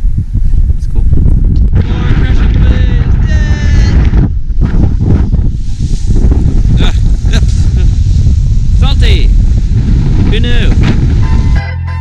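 Strong wind buffeting the microphone over rough surf breaking against a sea wall, with a few brief voices. Background music starts near the end.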